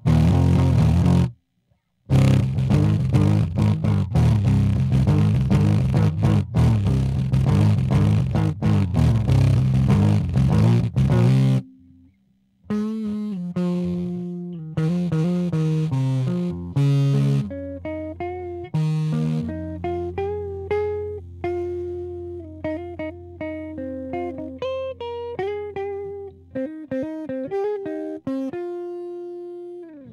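Electric guitar heard through a 15-watt practice amp turned fully up, its speaker cone damaged and patched over with paper: loud distorted strummed chords for about twelve seconds, then a quieter single-note solo with bent notes.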